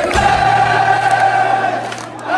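A large crowd singing together in unison, holding one long note over amplified live band music with a steady low bass note.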